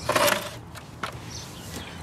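A plastic bathroom scale pushed across pavement into place under a motorcycle's rear tyre: a short scraping noise at the start, then a single click about a second in.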